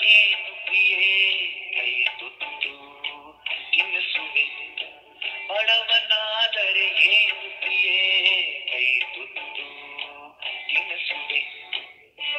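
Recorded Kannada song: a singing voice holds long, wavering notes over musical accompaniment, with short pauses between phrases. The sound is thin, with little bass.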